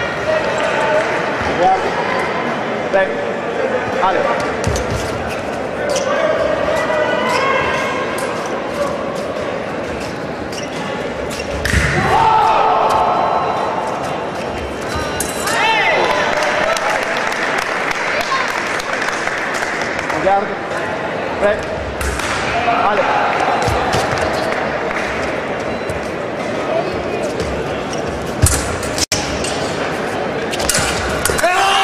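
Sabre fencing in a large, echoing hall: repeated sharp knocks and thuds of footwork on the piste and of blades meeting, over a steady wash of background voices. Louder calls stand out about twelve and sixteen seconds in.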